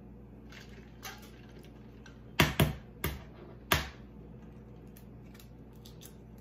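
A hard-boiled egg's shell being cracked by tapping it against a hard surface: four sharp knocks a little over two seconds in, the last two further apart, with a few faint clicks before.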